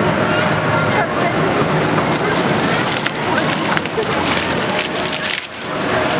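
Fountain jets splashing and spattering into a shallow pool, a steady wash of water noise, with a crowd chattering behind it. The sound drops away briefly near the end.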